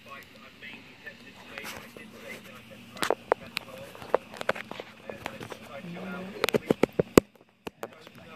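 A scatter of sharp clicks and knocks from a phone camera being handled and mounted on a tripod, over faint speech from a video playing in the background. The sound cuts out briefly near the end.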